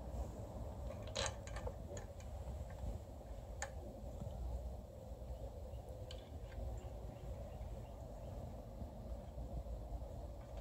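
A handful of faint, short metallic clicks and taps as bolts and nuts are fitted by hand to an engine's water manifold, over a low steady background hum.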